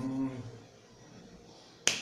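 A man's short hummed "mmm" at the start, then a single sharp smack near the end as his hands strike together.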